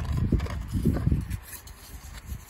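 Handling noise: a run of dull, low bumps and rubs as the handheld camera and the plastic DVD case are moved about.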